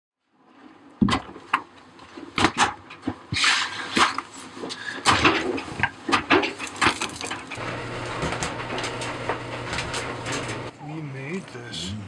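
Laundry being handled in a clothes dryer drum: rustling fabric and repeated knocks and clunks against the drum. About seven and a half seconds in, a steady low hum joins for a few seconds.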